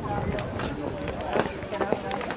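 Scattered shouts and calls of rugby players and spectators carrying across an open pitch, with several short knocks.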